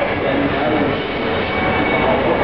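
Steady crowd din: many indistinct voices overlapping.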